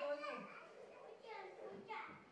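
A young child's voice babbling and calling out in high-pitched bursts, once at the start and again near the end.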